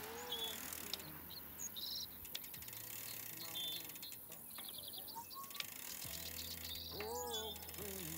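Small birds chirping in short, scattered calls and quick trills over a quiet, faint background hum, with a couple of brief runs of light ticking.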